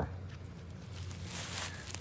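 Quiet outdoor background: a faint steady low hum with a soft, brief rustle about a second and a half in.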